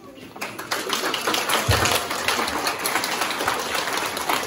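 Crowd applause starts about half a second in and goes on steadily, with a low thump a little under two seconds in.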